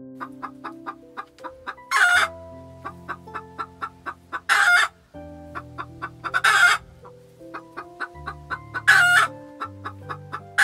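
Gentle piano background music with animal calls laid over it: a steady run of short clicking calls, about three or four a second, and four loud, short squawks roughly two to two and a half seconds apart.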